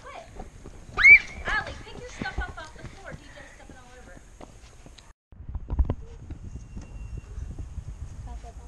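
A child's high-pitched rising squeal and wordless voices outdoors, then low rumbling wind and handling noise on the microphone with a single thump.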